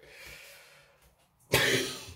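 A man coughs once, a sudden loud cough about one and a half seconds in, after a faint breath.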